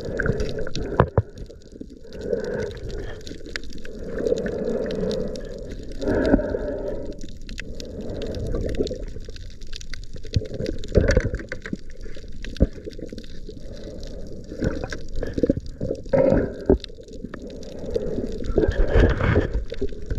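Water gurgling and sloshing, heard underwater, swelling and easing every second or two, with scattered sharp clicks and knocks.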